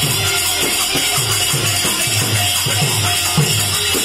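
Devotional kirtan music: a steady rhythm of hand-drum strokes, some sliding down in pitch, under continuous metallic jingling of hand cymbals.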